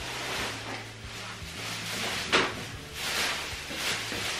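Clear plastic trash bag rustling and crinkling as it is pulled out of a small bathroom wastebasket, with a sharp knock about two seconds in.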